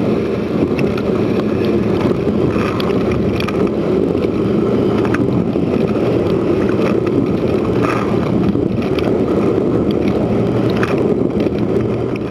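Dishwasher running its wash cycle, heard from inside the tub: a steady rush of water thrown by the rotating spray arm over the wash pump's hum, with faint spatters now and then.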